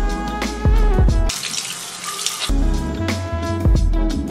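Background music, with water running from a faucet into a sink; the music drops out for about a second, leaving only the running water.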